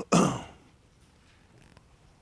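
A man clears his throat with one short cough.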